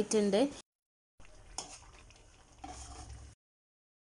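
Faint sound of a whole masala-coated chicken cooking in oil in an aluminium kadai, with a single light click about a second and a half in. The sound cuts off suddenly a little past three seconds.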